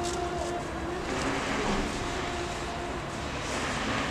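Steady outdoor background noise with a low, even rumble like distant traffic.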